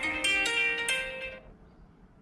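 Phone alarm tone playing a plucked-string melody, a quick run of stepping notes that stops about a second and a half in.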